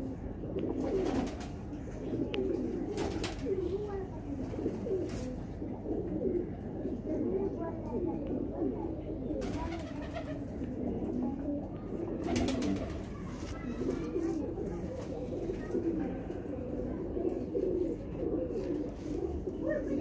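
Domestic pigeons cooing without a break, several low calls overlapping, with a few sharp clicks now and then.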